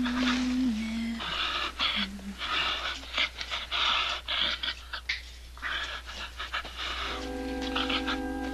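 A man panting heavily through his open mouth, in quick, laboured breaths about one a second. A low held music note sounds at the start, and sustained orchestral chords come in near the end.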